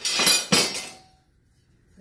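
Metal speed squares clattering and clinking together as they are handled. The sharp metallic rattle lasts about a second and ends in a short ring.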